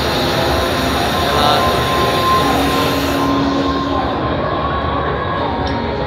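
Steady, loud din of a crowded indoor exhibition hall: a dense mix of crowd chatter and hall noise, with a few faint steady tones running through it.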